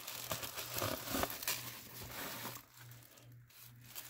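Crinkling and rustling of packing material as a cardboard shipping box is handled and tilted. It is busy for about the first two and a half seconds, then quieter.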